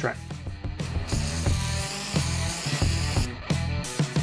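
Aerosol can of Liquid Wrench chain lube spraying onto a roller chain: one steady hiss of about two seconds starting about a second in, over background music.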